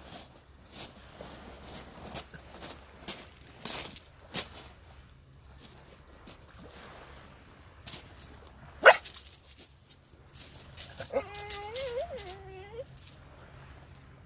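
A dog whining in a wavering pitch for about two seconds near the end. Before it come scattered rustles and clicks, and one sharp, loud sound about nine seconds in.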